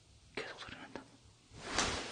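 A person whispering: a few short whispered sounds, then a louder breathy hiss that swells near the end.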